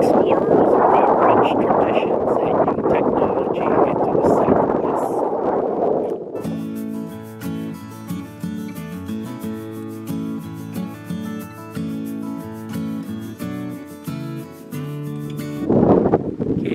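Strong wind buffeting the microphone for about six seconds, cut off abruptly by background music with a steady rhythm, which runs on to the end.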